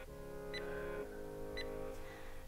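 Soft background music of sustained notes, with two short high beeps about a second apart from an on-screen countdown timer.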